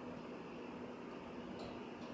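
Quiet room tone: a steady hiss with a low, even hum, and a faint tick near the end.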